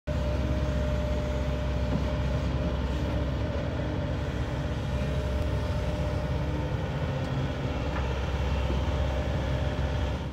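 CASE CX130D crawler excavator's diesel engine running steadily as the machine digs and slews, a continuous low drone with a faint steady whine above it.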